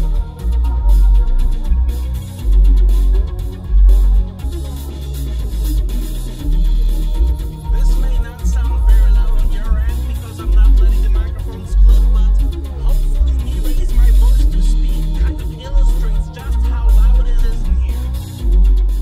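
Music played loud through a car's audio system, heard inside the car's cabin, with a heavy bass line from a single 6.5-inch AD2206 subwoofer in a 3D-printed bass tube. The deep bass notes step between pitches every half second or so.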